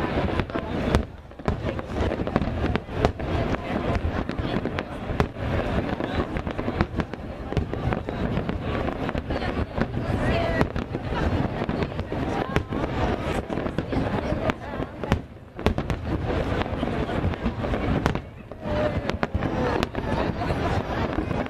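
Aerial firework shells bursting in a dense, continuous run of bangs, with short lulls about a second in and near the end.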